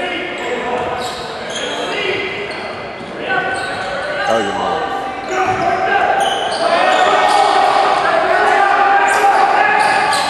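Indistinct voices of players and spectators echoing around a gymnasium during a basketball game, growing louder about halfway through, with a basketball bouncing on the hardwood court.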